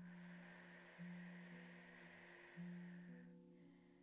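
A soft, slow exhale blown out through pursed lips, fading out after about three seconds. Under it, quiet background music holds sustained low notes that change about a second in and again past halfway.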